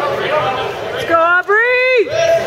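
Spectator chatter in a gym, then two loud high-pitched shouts from a spectator cheering on a wrestler, the second one held, rising in pitch and breaking off.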